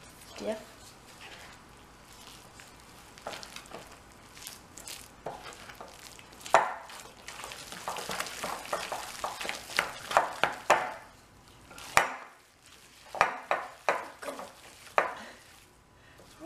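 Wooden spoon stirring a thick, sticky dough of melted cheese, almond flour and eggs in a glass bowl, with irregular knocks and scrapes of the spoon against the glass. The stirring is densest in the middle, with the sharpest knocks about six and a half seconds and twelve seconds in.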